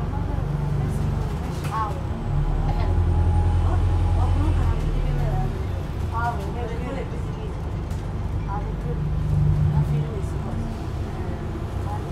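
On board an Alexander Dennis Enviro400H MMC hybrid double-decker bus under way: a steady low drive hum that swells for about two seconds a couple of seconds in and again briefly near the end, under faint passenger voices.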